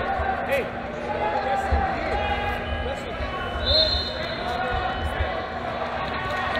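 Busy indoor wrestling hall: many people talking over one another, with scattered dull thuds and a short high-pitched tone a little past the middle.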